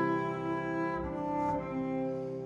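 Double bass and piano playing a slow, quiet passage: a long bowed double-bass note held over the piano, with a change of note about halfway through.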